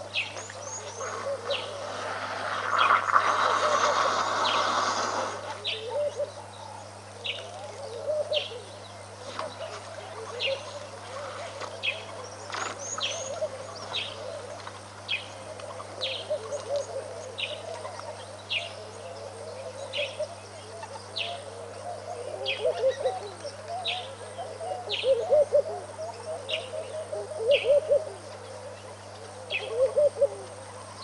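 Wild birds calling: one bird repeats a short, sharp, high note roughly once a second, while lower chattering calls go on underneath, over a steady electrical hum. Near the start a rushing noise lasts about three seconds and is the loudest part.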